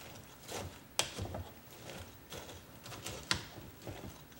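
A wooden spatula stirring and pushing moist bread cubes around in a pot, with soft scrapes and two sharp knocks of the spatula against the pot, about a second in and a little past three seconds.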